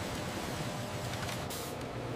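Steady factory machinery noise, an even running hiss with no distinct strokes or rhythm.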